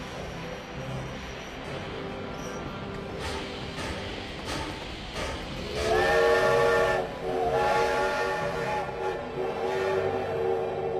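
Steam train whistle blowing, first about six seconds in and again after a short break, a chord of steady tones over the hiss of steam on the platform.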